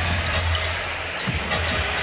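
Steady arena crowd noise at a basketball game, with a basketball being dribbled on the hardwood court and a low steady drone underneath.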